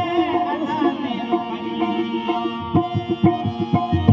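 Marwari folk music: a man singing with ornamented, wavering held notes over a harmonium's sustained chords. Drum strokes join in during the last second or so.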